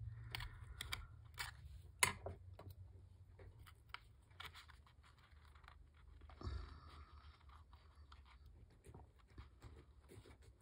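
Faint clicks and scratches of a pointed piercing tool punching through a layered paper tag, the sharpest click about two seconds in. A short rustle and scrape follow as paper and a metal pull tab are handled, over a low steady hum.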